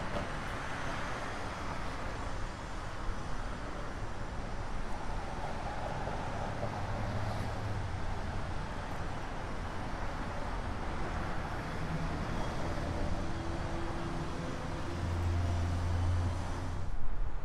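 Street traffic: a steady wash of vehicles passing by, with a deeper engine hum rising near the end as a heavier vehicle goes by.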